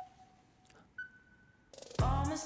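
Mostly quiet, broken by two faint short tones about a second apart, the second one higher. Music begins fading in just before the end.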